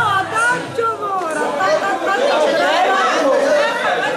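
Many people talking at once in a large, echoing hall: overlapping crowd chatter with no music.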